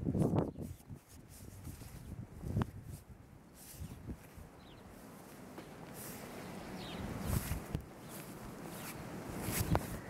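Quiet, scattered crunching footsteps of a small child wading through deep snow, with rustles of clothing.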